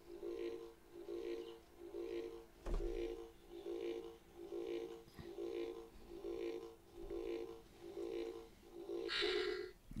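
Electronic 'Shocking Liar' lie detector toy playing its scanning sound: a faint two-tone beep repeating about three times every two seconds. Shortly before the end it changes to a brighter, higher sound as the scan finishes.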